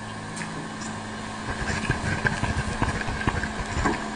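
Smartpen tip writing on paper: a run of small, irregular scratches and ticks, picked up close by the pen's own built-in microphone, over a steady low hum.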